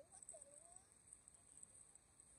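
Near silence: faint store room tone, with a faint voice briefly in the first second.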